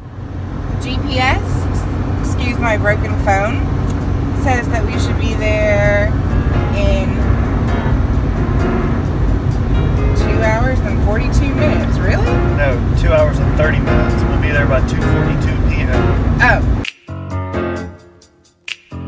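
Car cabin road noise at highway speed, about 70 mph: a steady low rumble of tyres and engine, with voices and music over it. The rumble cuts off sharply near the end.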